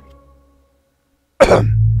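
A person coughing, sudden and loud, about one and a half seconds in after a moment of near silence.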